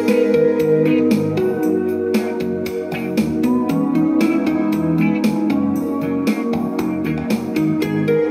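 Music with a steady beat, played back from a compact disc by a 1988 Yorx CD Pal CD player, with playback just begun.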